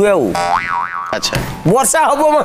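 A cartoon-style 'boing' comedy sound effect: a springy tone that wobbles up and down in pitch for under a second, followed by a few short clicks.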